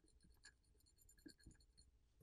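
Near silence with a few faint, short scrapes of a Mohs hardness pick's level-7 tip drawn across a phone's Gorilla Glass Victus 2 screen, hard enough to scratch the glass.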